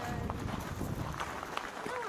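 Indistinct voices of people around, with footsteps on a gravel path.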